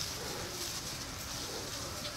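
Steady outdoor ambience: an even, high-pitched insect hiss with no distinct event standing out.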